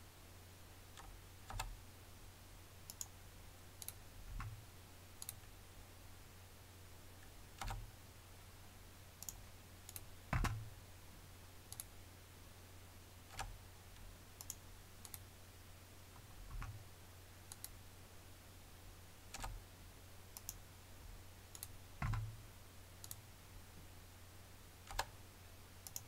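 Faint, scattered clicks of a computer mouse and keyboard, one every one to three seconds, the loudest about halfway through and near the end, over a steady low hum.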